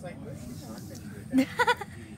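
A person's short, pulsed laugh about one and a half seconds in, with faint voice before it.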